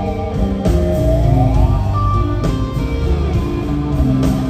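Live electric band playing an instrumental passage: a slide guitar holds a note, then glides smoothly up in pitch about a second in, over drums and low bass.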